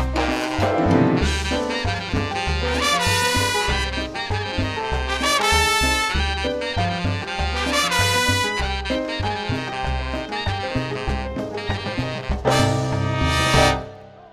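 Tropical dance orchestra playing live: saxophones carry melodic lines over a bass line and hand percussion. The music breaks off suddenly at the very end.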